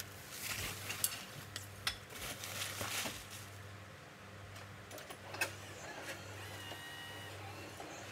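Plastic stretch wrap being pulled off a pallet of boxes by hand, crackling and crinkling with sharp snaps over the first three seconds, then only occasional rustles. A steady low hum runs underneath, and a faint, brief whine comes in past the middle.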